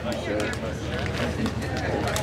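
Indistinct voices of people talking in the background over steady outdoor background noise.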